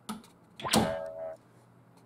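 A door being worked: a short latch click, then about half a second later the door knocks against its frame with a brief pitched creak.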